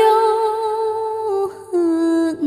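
A woman singing a Vietnamese Nghệ Tĩnh folk song, holding one long wordless note, breaking off briefly about one and a half seconds in, then holding a lower note.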